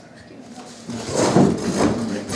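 Scraping, rustling handling noise. It starts about a second in, comes in two loud bursts and fits a leather tablet case and sleeve rubbing as the tablet is moved in the hand.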